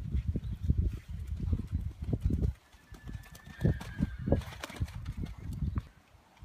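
A pony's hoofbeats on a sand arena, heard as irregular low thuds under a rumble of wind on the microphone. The thuds drop out about two and a half seconds in and return about a second later.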